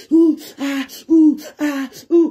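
A person's voice chanting short, repeated syllables on a nearly level pitch, about five in two seconds.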